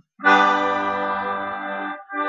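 Bayan (button accordion) sounding a held G major chord, the dominant of a blues chord progression in C major. It starts about a quarter second in and is held steady, easing slightly, until just before the end.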